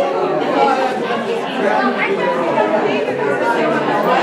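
Several people chatting at once, their voices overlapping into a steady hubbub in a large hall.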